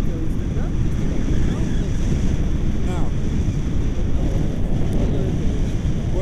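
Steady wind noise from airflow buffeting the camera's microphone in paraglider flight, with a few faint voice fragments.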